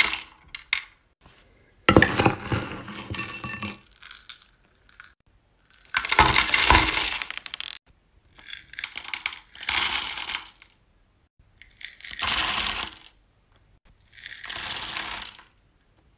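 Hard wax beads and discs poured into an electric wax warmer's metal pot, clattering like dropped coins. There are about five pours, each a second or two long, with short silent gaps between.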